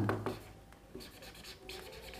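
Marker pen scratching on a whiteboard while a word is written, a run of short, faint pen strokes.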